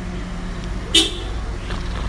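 A single short car-horn toot about a second in, over the steady low hum of vehicle engines running in the street.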